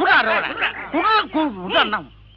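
A person's voice in film dialogue, with short broken phrases that may be a chuckle.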